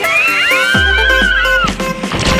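Two riders screaming as they go down a water slide: long screams that rise in pitch, start a moment apart and hold for over a second, over upbeat electronic background music.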